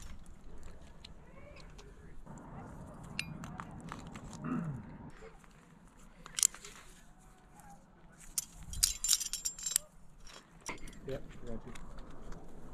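Climbing carabiners clinking: a sharp metallic click about six seconds in as a quickdraw is clipped to a bolt hanger, then a quick run of jangling carabiner clinks around nine seconds in.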